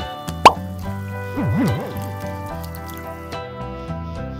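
Background music with a loud, quick upward-sweeping plop about half a second in, followed about a second later by a short sound that swoops up and down in pitch.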